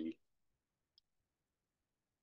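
A single faint computer mouse click about a second in, amid near silence.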